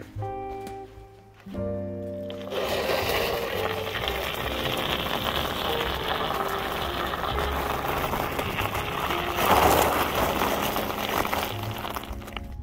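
Background music with steady held notes. From about two and a half seconds a steady, grainy rushing joins it: the studded fat tires of a recumbent trike rolling over icy snow. The rushing grows louder for about a second near ten seconds.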